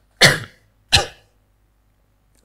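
A man coughing twice into his fist, two short sharp coughs less than a second apart, the first the louder.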